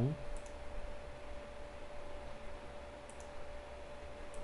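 Computer mouse clicking: two faint clicks, about half a second in and again about three seconds in, over a steady faint electrical hum.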